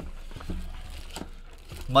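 Hands opening a cardboard trading-card hobby box: soft rubbing and handling of the box as its lid comes off, with a few light taps. Speech starts right at the end.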